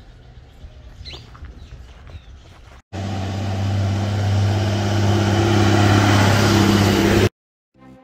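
Roadside ambience with a few bird chirps, then a sudden cut to the loud, steady drone of a diesel tipper truck's engine, growing slightly louder. The drone cuts off abruptly about seven seconds in.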